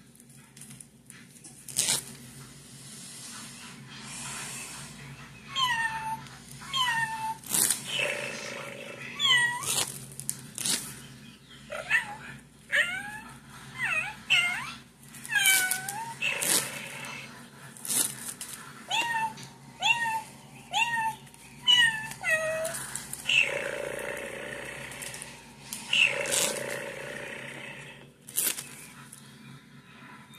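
A cat meowing over and over, with short calls that each fall in pitch, coming about one a second from roughly five seconds in. Sharp clicks fall among the meows.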